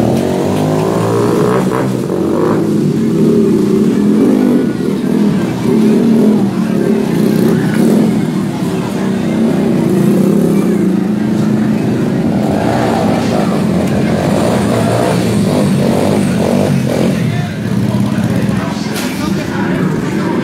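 Motorcycle engine running and revving during stunt riding on the rear wheel, its pitch rising and falling, with crowd voices around it.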